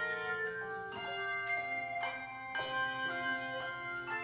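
Handbell choir playing a piece: chords of bells struck every half second or so, each ringing on and overlapping the next.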